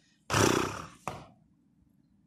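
A horse close to the microphone blows a loud breath out through its nostrils, then gives a second short puff about a second in.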